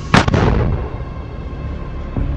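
A single loud, sharp blast just after the start that dies away within about half a second: a rocket launcher firing.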